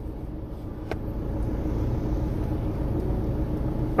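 Road traffic: a low, steady rumble of car engines and tyres that grows gradually louder as a car approaches, with a single faint click about a second in.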